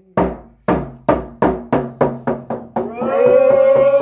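Hand-held frame drum struck with a beater on its own, each beat ringing low and fading, the beats quickening from about two a second to about four. About three seconds in, voices come in singing over the drumbeat.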